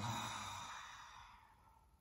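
A long open-mouthed exhale, a breathy sigh out through the mouth during a yoga breathing exercise, fading away over about a second and a half.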